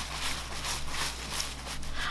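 Paper towel rustling and crinkling as it is pressed and patted onto a wet bunch of cilantro to blot it dry: a run of soft, irregular strokes.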